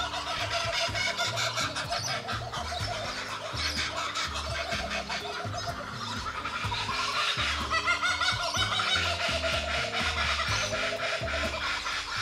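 Laughing kookaburras calling in rolling, warbling laugh sequences, louder in the second half, over background music with a steady low beat.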